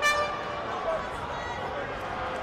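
The timekeeper's round signal sounds once, short and loud, right at the start, marking the start of the first round, over the murmur of a crowd in the hall.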